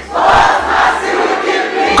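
Congregation of many voices speaking a line together in response to the preacher, blended into one loud crowd sound with no single voice standing out.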